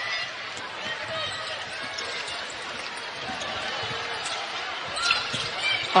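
A basketball dribbled on a hardwood court amid steady arena crowd noise, with scattered short high squeaks and calls from the players. It gets louder about five seconds in.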